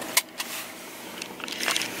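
A sharp click just after the start, then faint crackling and ticking handling noises inside a car's cabin.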